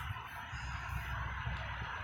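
Low background rumble and hum with a faint steady high whine, between stretches of speech; no distinct event stands out.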